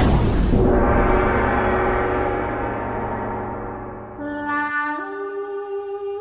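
A gong struck once, ringing with many tones and slowly fading over about four seconds. About four seconds in, held notes of a slow melody enter and step up in pitch once.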